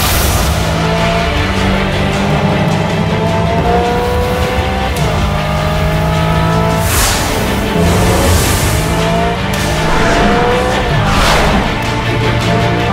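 Hyundai IONIQ 5 N electric car accelerating hard, its whine rising in pitch, dropping back and climbing again several times like gear changes, with whooshes as it passes about 7 and 11 seconds in. A music soundtrack with a low bass line plays under it.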